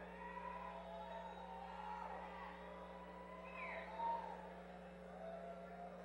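A steady electrical hum from the stage amplifiers and PA, with faint, scattered shouts from the crowd over it.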